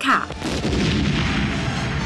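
A film explosion: a loud, dense blast that sets in about half a second in and carries on as a steady rumble.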